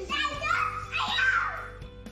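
A young child's high-pitched voice, wordless shouting or squealing during play, over steady background music.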